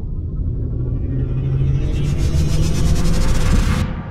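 Cinematic logo-reveal sound effect: a deep rumble with a hiss rising over it, swelling for about three seconds and then cutting off suddenly just before the end.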